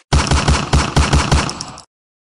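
A burst of machine-gun fire: rapid, evenly spaced shots about seven a second for nearly two seconds, cutting off suddenly.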